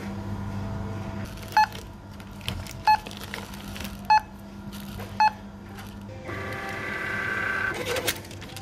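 Supermarket checkout scanner beeping four times, about a second apart, as items are scanned. Near the end comes a whirring of about a second and a half.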